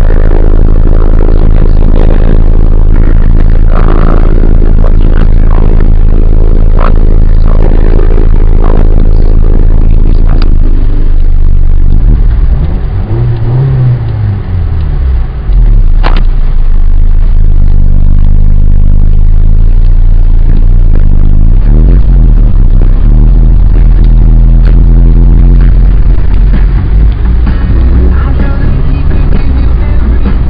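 Honda Civic EG8 accelerating hard, heard loudly from inside the cabin, with music playing over the engine. The sound dips briefly about halfway through, with a sweep in pitch.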